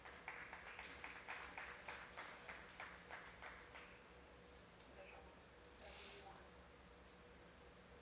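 Sparse clapping from a small arena crowd, several claps a second, fading out about four seconds in. A brief hiss follows near six seconds, over a faint steady hum.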